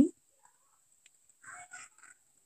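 A spoken word trails off at the start, then near quiet, broken by a faint tick and, about a second and a half in, three faint short animal calls in quick succession.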